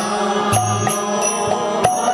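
Kirtan: a voice chanting a devotional melody over a steady percussion beat.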